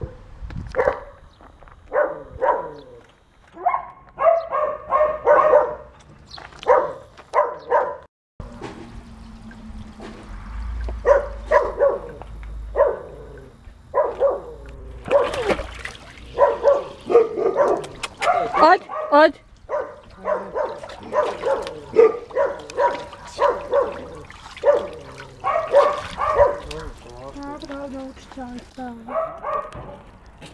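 Mostly a person talking in short phrases, partly in Bosnian, with a dog's sounds now and then among the speech. The sound drops out briefly about eight seconds in.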